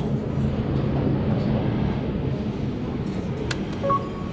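Steady background din of a busy indoor hall, with a short high beep near the end as a button on a meal-ticket vending machine is pressed.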